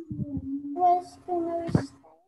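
A child's voice singing or humming one long held note over the video-call audio, with another voice's syllables over it in the second half.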